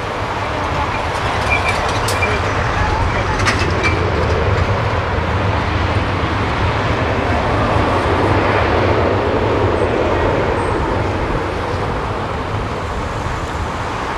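Airbus A380-841's Rolls-Royce Trent 900 jet engines roaring as the airliner rolls out on the runway after touchdown, a heavy steady rumble. It swells for the first half and slowly fades toward the end.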